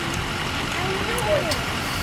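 Steady hum of a car engine and surrounding traffic in slow stop-and-go traffic, heard from inside the car's cabin. A faint voice is heard near the middle.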